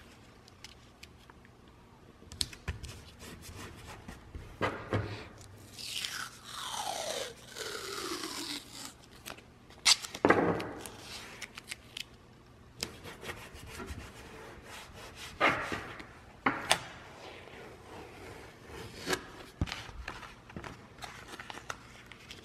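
Masking tape being handled on a cardboard template: a long screech of tape pulled off the roll, falling in pitch, about six seconds in, then sharp crackles and rubbing as strips are torn, wrapped and pressed onto the cardboard, loudest about ten seconds in.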